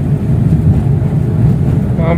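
Steady low rumble of a car on the move, heard from inside the cabin: engine and road noise.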